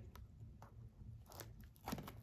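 Faint crinkling and crackling of plastic wrapping as a trading-card box or pack is handled, a few sharp crackles with more of them near the end.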